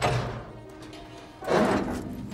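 A heavy door's latch knocks at the start, then a louder burst of noise about one and a half seconds in as the door is pushed open. Film score plays faintly underneath.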